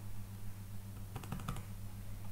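Computer keyboard keystrokes: a single key, then a quick run of about five keys near the middle, over a steady low hum.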